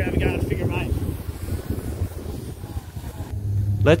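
Wind buffeting the microphone, a steady low rumble, with a brief faint voice near the start.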